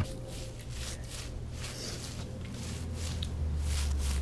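Hands rubbing shampoo lather into a wet husky's thick coat: soft, irregular wet rubbing and squishing strokes over a low steady hum.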